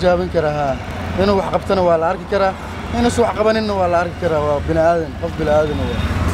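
A man talking continuously into a microphone, over a steady low rumble of street traffic.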